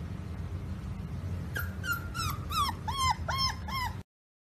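Pit bull puppy giving a quick run of about seven short, high-pitched yips, about three a second. They start about a second and a half in and grow louder.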